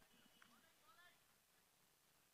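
Near silence: the commentary feed is quiet, with only a faint tick and faint traces of sound.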